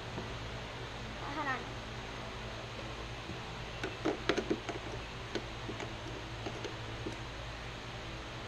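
Light clicks and knocks of hardware and a plastic grass chute guard being handled and fitted by hand to a riding mower's deck, with a quick cluster about four seconds in, over a steady low hum. A short falling cry comes about a second and a half in.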